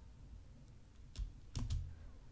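Two computer mouse clicks about half a second apart, the second louder, over faint room noise.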